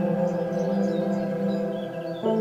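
Ambient meditation music: a ringing bell-like chord held and slowly fading, with birds chirping faintly and high above it.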